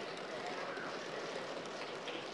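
Steady room noise of a large assembly chamber: an even hiss with a faint murmur of voices underneath.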